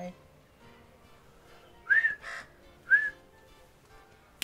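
Two short whistled bird notes about a second apart, each rising and then falling in pitch. Faint background music runs under them.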